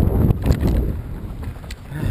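Mountain bike riding a dirt trail: wind buffeting the camera's microphone and tyre rumble make a loud, steady low noise. A couple of sharp clicks from the bike come about half a second in and near the end.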